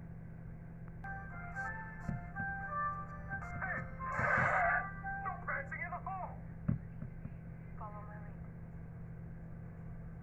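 Film soundtrack played through a TV speaker: a short melody of held, stepping notes, a brief noisy burst about four seconds in, then short voice sounds and one more held note, over a steady low hum.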